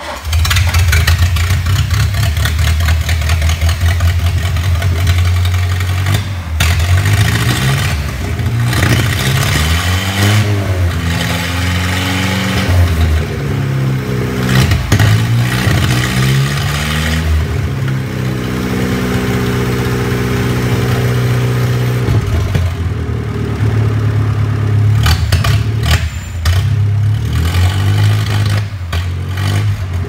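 The 1953 Land Rover Series 1's engine, running on the bare chassis and being revved by hand, its pitch rising and falling again and again, with a steadier, held stretch in the middle.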